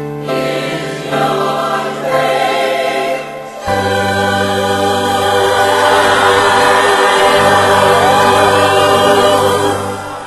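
A choir singing, moving through a few chords and then holding one long, loud closing chord from just before four seconds in.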